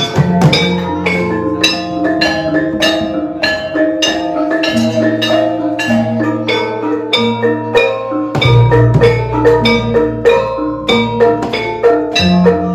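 Javanese gamelan playing an instrumental passage: bronze metallophones and gong-kettles struck in a steady, even beat with kendang drum strokes. A deep low note sounds in about eight seconds in and carries on beneath the ensemble.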